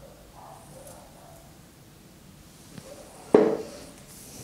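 A hand knocking down on a tabletop as cardboard pattern pieces are set in place: a faint click, then one sudden thump near the end that dies away quickly, over a quiet room.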